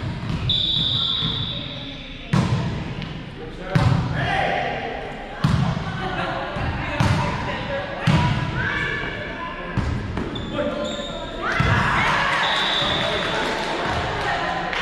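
A volleyball being struck by hands and arms during a rally in a gymnasium: sharp slaps about every one and a half seconds that ring in the hall, with players' voices and shouts.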